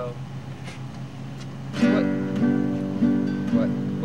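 Acoustic guitar strummed to open a song. After a quieter first couple of seconds it comes in loud, with the same chord struck evenly a little under twice a second.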